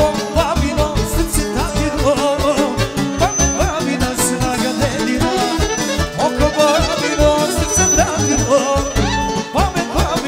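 Live band music: electric violins playing wavering melodies with vibrato over a heavy, steady bass beat, with a singer on a microphone.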